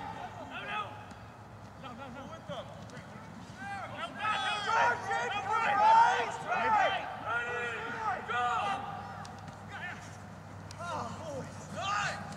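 Rugby players and sideline spectators shouting, several voices overlapping at a distance, loudest from about four to seven seconds in.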